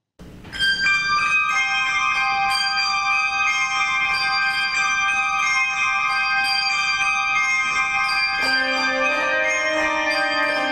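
Handbell choir playing: bells are struck in quick succession and their tones ring on and overlap. Lower bells join about eight seconds in.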